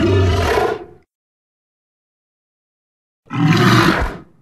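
Tarbosaurus roar sound effect: two roars with a silent gap between them. The first is already sounding and ends about a second in; the second starts near the end.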